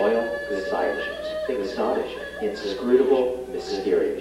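A human voice making wordless, drawn-out cries that bend up and down in pitch, over a steady held tone in the first part.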